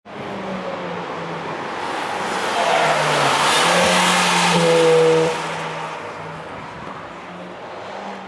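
Audi TT coupé driving past on a race track: its engine and tyre noise build to a peak about five seconds in, then drop away and fade as it goes by.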